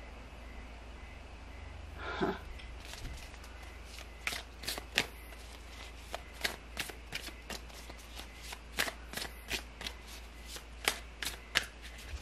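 A deck of tarot cards being shuffled by hand, with a run of sharp card snaps and flicks about three a second starting about four seconds in.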